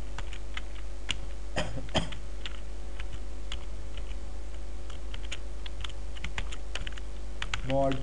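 Typing on a computer keyboard: irregular single keystrokes with short pauses between them, over a steady low hum.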